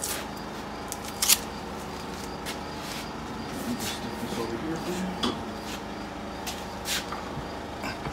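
Scattered light clicks and knocks from a removed winch hook and its synthetic rope being handled, the loudest about a second in, over a steady hum.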